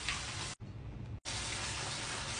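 Bathroom tap running into a sink as hair extensions are rinsed and squeezed under the stream: a steady rush of water that drops quieter for under a second about half a second in, then comes back.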